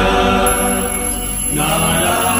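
Devotional mantra chanting set to music: a voice holding long sung notes, moving to a new note about one and a half seconds in.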